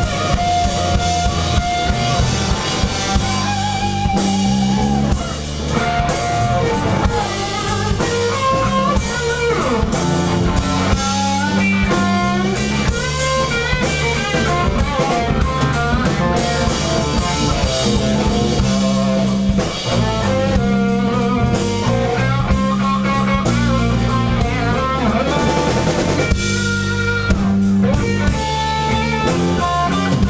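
Live blues band playing an instrumental passage: an electric guitar solo of single-note lines with string bends and vibrato over bass guitar and drum kit.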